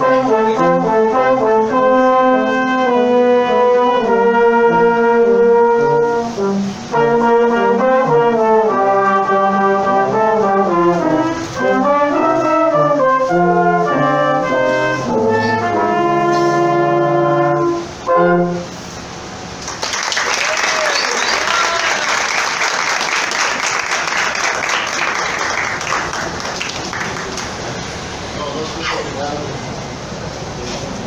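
Brass quintet (two trumpets, French horn, trombone and euphonium) playing in chords to the end of a piece, closing on a held final chord that cuts off about two-thirds of the way in. About a second later, steady applause starts and runs on, slowly easing.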